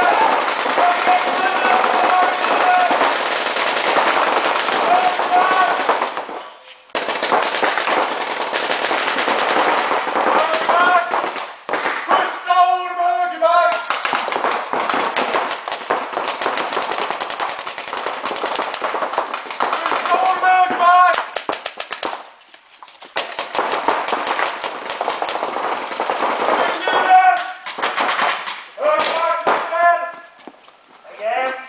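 Reball markers firing reusable rubber balls in rapid streams of shots in an indoor sports hall, breaking off briefly a few times, with shouted voices between the volleys.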